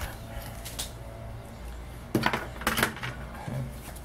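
Light clicks and small plastic knocks from handling a clamp multimeter and its test leads, a faint pair just under a second in and a quick cluster a little past two seconds in.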